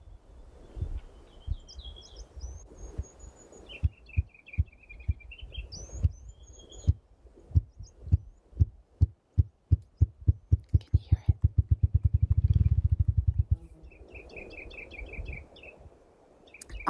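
Male grouse drumming with its wings, identified as a male spruce grouse's mating display: low thumps that start slow and speed up into a rapid roll, then stop, a sound heard as mechanical, like an engine trying to turn over. Small birds chirp early on and again near the end.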